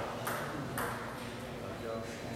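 Table tennis ball being hit in a rally: two sharp clicks of the ball off paddle and table, about half a second apart, in the first second.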